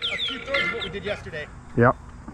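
Men's voices in casual conversation, ending in a short, clear 'Yep' near the end.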